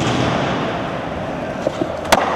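Skateboard wheels rolling steadily on a smooth concrete manual pad during a nose manual, with a couple of light clicks near the end as the board is popped into a nollie flip.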